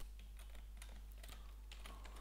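Computer keyboard typing: a quick, faint run of key presses.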